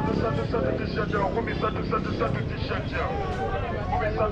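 Busy street-market ambience: several people talking nearby, overlapping, over a steady low rumble of traffic.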